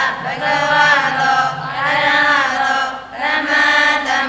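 A group of women chanting a Buddhist recitation together in unison. The phrases are long and drawn out, with brief breaks about every second and a half.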